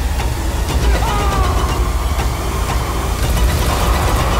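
Horror-trailer sound design: a loud, deep, steady rumble with falling high glides about a second in and scattered ticks.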